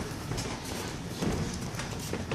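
Sparring in a boxing ring: boxers' feet stepping and shuffling on the ring canvas, with gloved punches landing, a run of irregular knocks and thuds.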